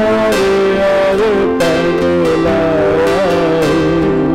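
Live gospel worship band music: strummed guitar over held chords, with a slow, wavering melody line on top.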